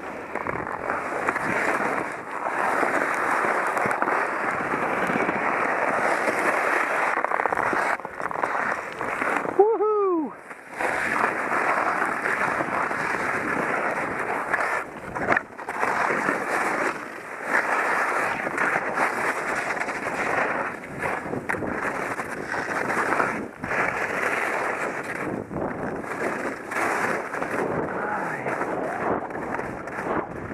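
Skis scraping and chattering over hard, icy moguls on a steep descent, mixed with wind rushing over a helmet-mounted microphone; the noise swells and drops with each turn. About ten seconds in, a brief pitched call rises and falls.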